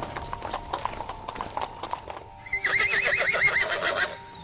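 A horse's hooves clip-clopping in a steady beat, then a loud, wavering horse whinny from about two and a half seconds in, with music underneath.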